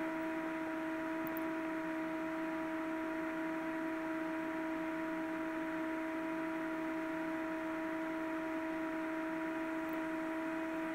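A steady electrical hum, one low pitch with its overtones, unchanging throughout, over faint hiss.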